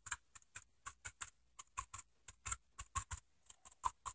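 Sea sponge being dabbed on a spray-painted surface: a quick, irregular run of faint soft taps, about five a second.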